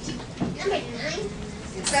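Several young children's voices talking and murmuring over one another, quieter than the teacher's voice around it.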